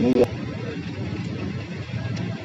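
A man's voice is heard briefly right at the start. After that comes a steady low rumble of background traffic and crowd noise.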